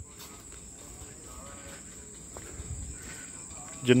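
Crickets chirring steadily in one even, high-pitched note.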